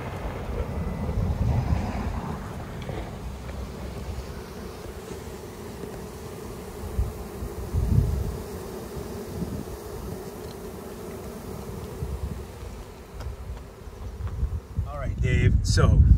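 A honeybee swarm humming steadily as it clusters on and crawls into a wooden hive box, with occasional low rumbles.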